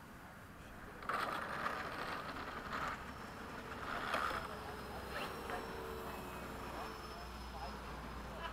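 Electric ducted fan of an 80 mm RC MiG-21 jet flying past. A rushing whoosh starts suddenly about a second in and swells twice, then settles into a high fan whine that slowly falls in pitch.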